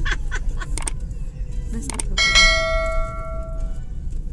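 A bright bell ding, the notification-bell sound effect of a subscribe-button animation, strikes about two seconds in and rings out for over a second. It is preceded by a few sharp clicks and lies over a steady low rumble of road noise from inside a moving vehicle.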